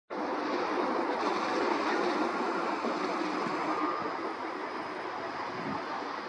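Class 152 electric freight locomotive hauling a train of container wagons: a steady rolling noise of wheels on rails, easing slightly after about four seconds.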